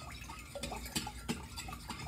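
A few light ticks and clinks at a glass mixing bowl of juice, spread about a third of a second apart, as sugar is added by hand. They sit over a steady low room hum.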